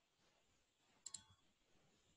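Near silence broken by a faint double click about halfway through.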